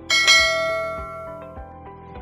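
A single notification-bell ding from a subscribe-button animation: one bright ring just after the start that fades away over about a second and a half, over steady background music.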